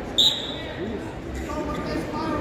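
A single short, loud, high-pitched squeal about a quarter of a second in, over a steady murmur of crowd voices in a large hall.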